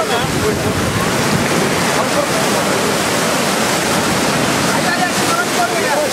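Sea surf washing in over the shore in a loud, steady rush of water, with faint voices underneath.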